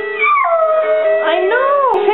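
Malamute howling along to a toy's tinny tune: one long howl that slides down steeply at the start, holds a steady pitch, then rises and falls again near the end.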